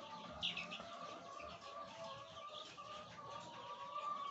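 Faint chatter of a flock of laying hens clucking and calling, steady and wavering throughout, with a brief higher chirp about half a second in.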